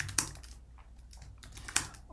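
Typing on a computer keyboard: a run of separate keystrokes, with two louder clicks, one just after the start and one near the end.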